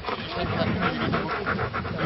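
Dog panting rapidly, about five quick breaths a second, after running.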